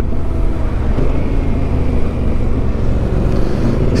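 Yamaha Ténéré 700's parallel-twin engine running steadily under way, heard from the rider's seat with wind and road noise over it.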